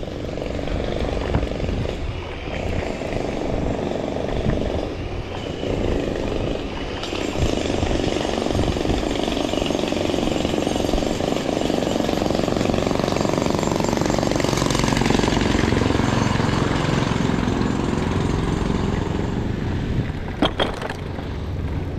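Riding noise from a bicycle rolling over brick paving: a steady rumble of wind on the handlebar camera's microphone with the bike's rattle, a little louder in the middle.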